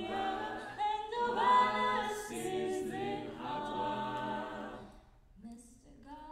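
Mixed-voice jazz a cappella group singing held chords in close harmony, phrase after phrase. The singing drops away briefly about five seconds in before the next phrase starts.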